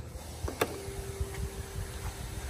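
A single click as the CFMOTO CForce 500's lights are switched on, followed by a faint steady hum that lasts about a second and a half, over a low rumble.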